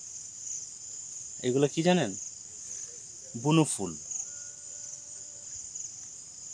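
A steady, high-pitched chorus of insects, crickets or cicadas, in hillside vegetation.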